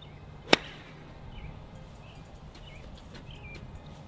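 A golf club striking a plastic wiffle ball on a full swing: one sharp crack about half a second in.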